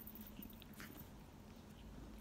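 Near silence, with a few faint soft ticks as a Manx kitten plays and nibbles at a hand.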